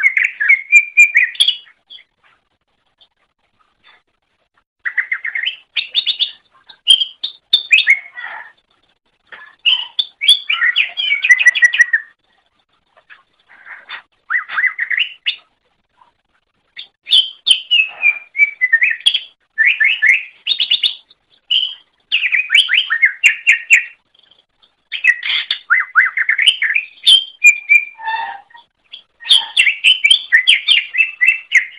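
Cucak ijo (green leafbird) singing: phrases of rapid, varied high notes, each lasting from about a second to several seconds, with short pauses between them and a longer pause about two to five seconds in.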